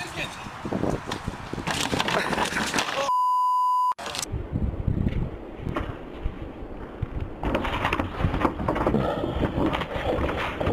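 A censor bleep, a steady flat beep about a second long, cuts in about three seconds in over voices. Near the end comes a clatter as a man jumping a sidewalk A-frame sign knocks it over and falls onto the pavement.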